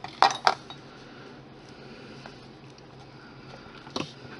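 A small sculpting tool put down on a hard worktable: two sharp clacks close together just after the start, then a few faint ticks and one more click at the very end.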